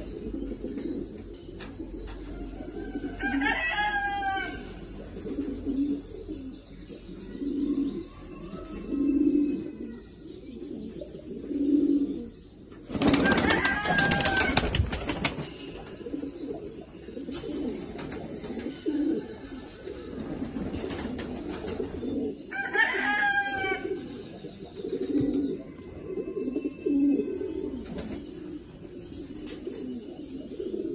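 Afghan-breed domestic pigeons cooing, with low coos repeating every second or two. A louder flurry that sounds like wing flapping lasts about two seconds near the middle, and a higher-pitched bird call comes twice, early on and about two-thirds of the way through.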